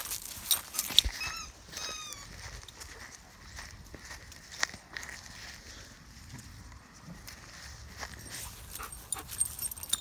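Dogs playing on grass: two short, high-pitched squeals, rising then falling, come a little over a second in. After them come a few scattered knocks and low rustling.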